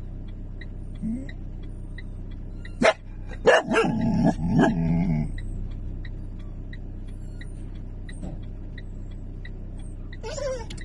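A dog yelps and whines: one sharp cry about three seconds in, then a run of high, wavering cries lasting about two seconds. Under it run a steady low engine hum and light, regular ticking.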